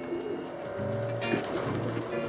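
Pigeons cooing over steady background music.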